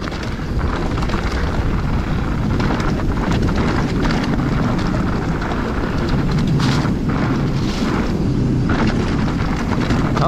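Wind buffeting the camera microphone over the rumble and rattle of a mountain bike's tyres on a loose dirt downhill trail at speed, with a few sharp knocks from the bike between about six and nine seconds in.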